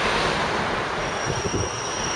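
Road traffic passing, with a thin, steady, high-pitched squeal of train wheels coming in about a second in.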